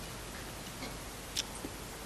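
A pause between speech: low steady room hiss through the podium microphone, with a few faint small clicks, the clearest about one and a half seconds in.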